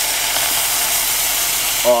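Red pasta sauce poured into a hot aluminium pot of frying sausage and onions, sizzling with a steady hiss.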